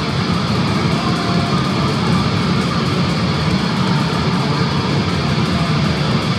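Thrash metal band playing live, loud electric guitar and bass guitar strumming.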